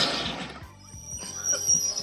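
Film soundtrack: a sudden sharp crash right at the start that dies away over about half a second, over background music.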